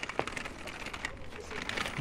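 Pushchair wheels rolling over brick paving, a light, irregular rattle of small clicks.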